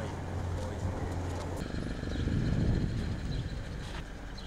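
Steady low engine hum from vehicles on a road bridge, with indistinct voices of a group in the background. The hum stops about a second and a half in, and a low rumble swells near the middle.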